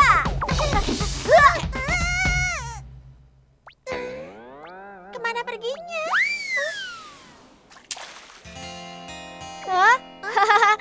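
Cartoon voices call out over a low rumble. After a short hush come springy cartoon 'boing' effects: gliding tones that swoop up, then one long falling whistle-like glide. Soft background music chords start near the end.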